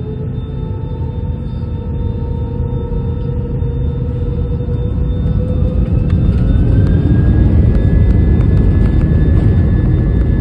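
Airbus jet airliner's engines spooling up at the start of the takeoff roll, heard from the cabin beside the wing: a rising whine over a rumble that grows louder and levels off about two-thirds of the way through.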